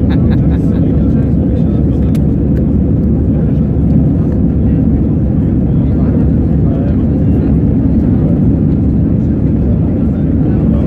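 Steady cabin noise of a jet airliner in its climb after takeoff: the engines and the rush of air heard through the fuselage, an even low rumble with no breaks. Faint voices can be heard under it.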